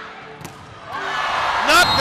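A volleyball struck once with a sharp smack, then arena crowd noise swelling loudly with excited shouting as the rally ends in a block at the net.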